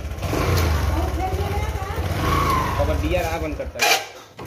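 Bajaj Discover motorcycle's single-cylinder engine running at low speed with a steady low rumble as the bike rolls to a stop; near the end there is a sharp knock and the engine sound cuts out.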